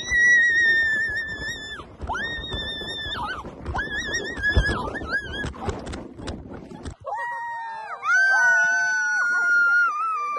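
Long, high-pitched cries, each held one to two seconds, over a rushing noise that stops about seven seconds in. After that, several cries overlap at different pitches.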